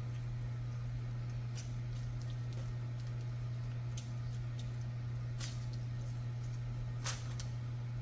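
A steady low hum runs throughout, with a few faint, brief clicks and crinkles from hands squeezing a lemon and handling the parchment paper and foil lining the pan.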